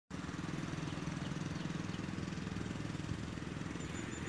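Motorcycle engine running at a steady, rapid beat as the bike rounds a hairpin bend, a little quieter in the second half.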